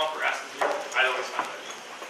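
Indistinct talking: short stretches of a voice that the speech recogniser did not write down.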